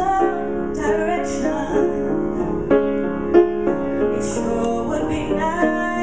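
A woman singing solo into a handheld microphone, with piano accompaniment.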